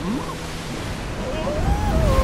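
Cartoon sound effect of a large rushing wave of water, swelling louder toward the end.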